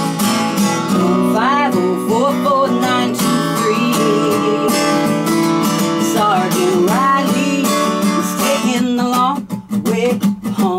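Acoustic guitar strummed in a steady rhythm, with a woman singing over it. The playing thins out briefly near the end.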